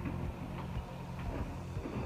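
Faint light clicks and knocks from plastic storage drawers being rummaged through, over a low steady hum.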